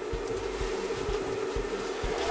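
A steady mid-pitched electrical hum over faint background noise.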